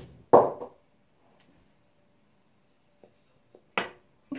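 A short closed-mouth hum, muffled by a lock of hair held in the mouth, comes just after the start. Then a quiet room until a single sharp knock near the end, as a hand bumps the camera.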